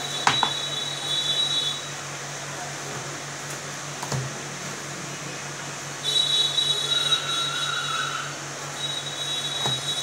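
A cardboard product box being handled on a glass shop counter, with a few light knocks, over a steady electrical hum. A thin high-pitched whine comes in twice, for about two seconds at the start and again from about six seconds in.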